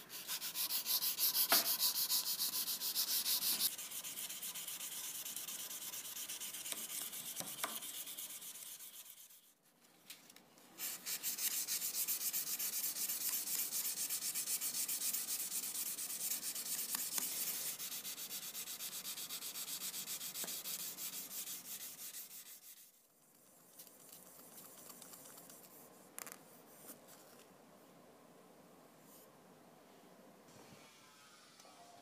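Sandpaper on a small block rubbed back and forth by hand along a steel scissor blade in quick, even strokes. It breaks off briefly about nine seconds in and stops about 23 seconds in, after which a fainter rubbing with finer 4000-grit paper goes on.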